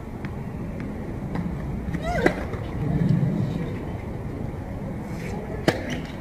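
A tennis ball bounced a few times on a hard court, then sharp racket-on-ball hits about two seconds in and again near the end, the first with a short cry from the player. A low murmur of voices and traffic sits underneath.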